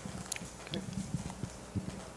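Soft, irregular low thuds and knocks with a few faint clicks, picked up by a desk microphone.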